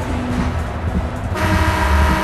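Music with a heavy bass beat. About one and a half seconds in, a loud, steady horn blast starts and keeps sounding.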